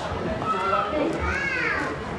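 A child's high voice calling out over background voices and chatter.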